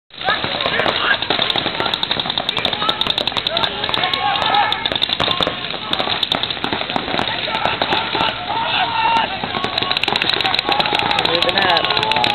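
Paintball markers firing in rapid strings of sharp pops, thickening toward the end, over spectators' shouting and chatter.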